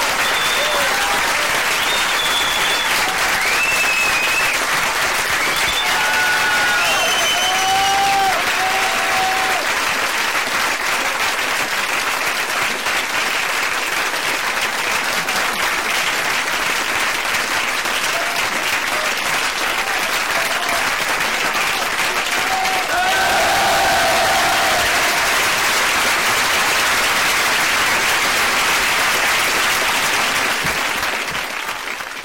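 Live audience applauding steadily, with a few voices calling out over the clapping in the first several seconds and again about 23 seconds in.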